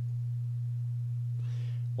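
Steady low hum, a single unchanging tone, with a faint soft hiss near the end.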